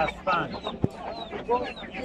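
Chickens clucking in short calls, with a single sharp click a little before the middle.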